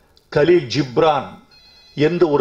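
A man speaking Tamil into a podium microphone. Near the end, as he pauses, a short high electronic tone of several steady pitches sounds: a phone ringing.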